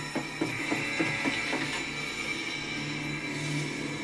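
Sound effects from an animated episode: a quick run of evenly spaced clicks or knocks, about three or four a second, for the first two seconds, over a steady low hum.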